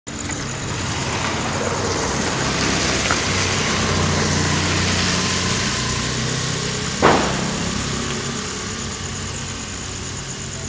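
Street ambience with a motor vehicle's engine running nearby over road-traffic noise, the engine easing off near the end. One sharp knock, the loudest sound, comes about seven seconds in.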